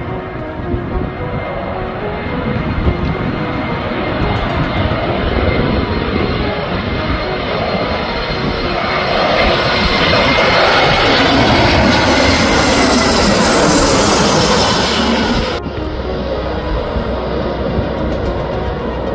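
Airbus A320-214's CFM56 turbofan engines on final approach, passing low overhead: jet noise that grows steadily louder and brighter, loudest a little past the middle, then cuts off suddenly near the end. Background music runs faintly underneath.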